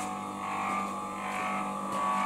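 Electric motor running with a steady, unchanging hum.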